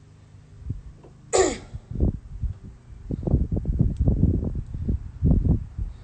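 A person's sudden, sharp, noisy exhalation like a sneeze about a second in. It is followed by several seconds of low, irregular rumbling and thumping.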